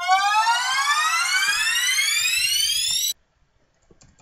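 Trap FX sample (fx3.wav) previewed from FL Studio's browser: a riser that sweeps steadily up in pitch for about three seconds, then cuts off abruptly.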